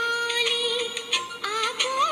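A song with a woman singing over instrumental accompaniment. She holds one long note for about the first second, then the melody moves on in short, bending phrases.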